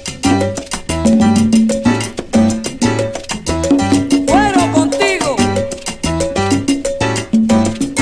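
Instrumental passage of a salsa orchestra recording: bass and percussion keep a steady, even beat under held instrument notes, with a run of sliding, swooping notes about halfway through.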